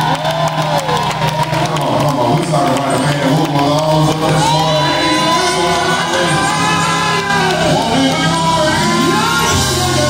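Live gospel music: a band with electric guitars and bass plays under singers' long held, sliding notes, with the congregation shouting and cheering along.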